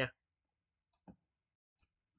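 A single computer mouse click about a second in, followed by a much fainter tick near the end.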